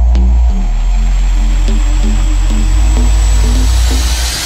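Dark bass house music: heavy sustained sub-bass notes under a repeating synth figure, with a noise swell building up near the end.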